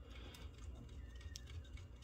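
A few faint clicks of plastic Lego Technic parts as a hand works the model's linear actuator mechanism.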